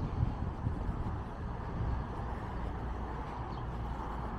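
Steady street traffic noise: the continuous rumble and hiss of cars passing on a nearby road.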